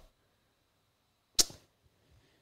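Near silence, broken once about one and a half seconds in by a brief, sharp noise close to the microphone.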